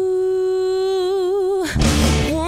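A woman's voice holding one long sung note, steady at first and then wavering with vibrato, with the band nearly silent behind it. Near the end the note stops and a cymbal crash and drum hit come in.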